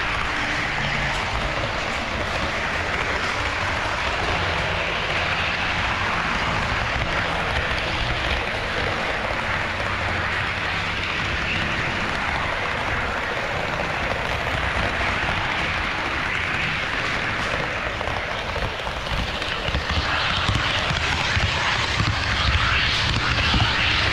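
HO-scale model train running along KATO Unitrack, heard from a camera riding on the train: a steady running noise of wheels and motor on the rails, a little louder near the end.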